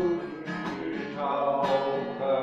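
Music with a strummed acoustic guitar, chords struck at regular intervals under sustained notes.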